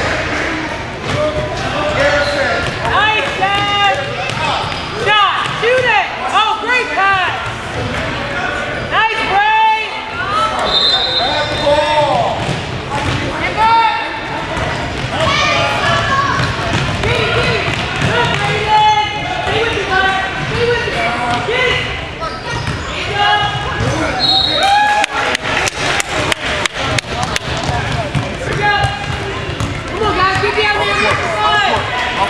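Youth basketball game sounds on a hardwood gym floor: sneakers squeaking, indistinct shouting voices, and a basketball being dribbled. Near the end comes a quick, even run of bounces as a player dribbles up the court.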